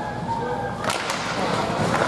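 Ice hockey faceoff: a sharp crack of sticks and puck about a second in, followed by skate blades scraping on the ice.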